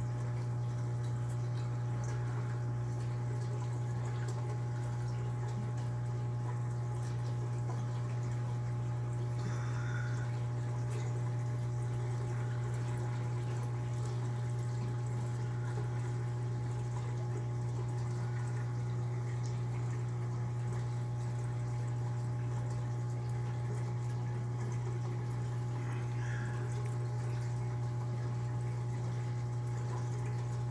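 Reef aquarium equipment running: a steady low hum from the tank's pump with water trickling and circulating softly over it, and an occasional faint drip.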